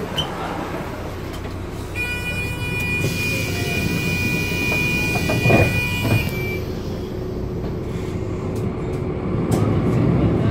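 Interior of a VDL Citea CLF 120 city bus under way: steady engine and road rumble. A steady high tone of several pitches together sounds from about two seconds in to about six seconds, with a thump shortly before it ends.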